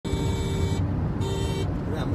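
Two blasts of a horn, the first about three-quarters of a second long and the second shorter, over a steady rumble of road traffic.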